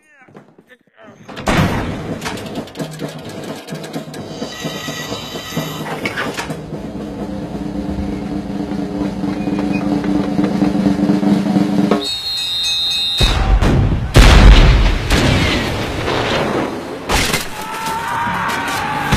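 Cartoon soundtrack music with a snare drum roll, building for about ten seconds, then a very loud deep cannon boom about thirteen seconds in, followed by a noisy clatter.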